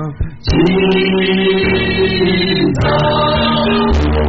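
Gospel worship singing by a group of voices, with long held notes. The sound drops out briefly just at the start, and the notes change about two and a half seconds in.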